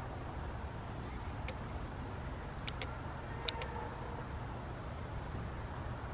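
A few faint sharp clicks from an Empire Axe 2.0 paintball marker's trigger, pulled while its electronic board is in program mode, so it is not firing. One comes about a second and a half in, a quick pair near three seconds and another pair about half a second later. A steady low outdoor rumble runs under them.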